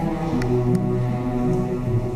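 String orchestra playing, its cellos and double basses bowing long, low held notes.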